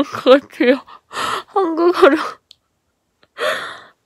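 A young woman giggling in several short bursts, with breathy gasps of laughter, her hand over her mouth.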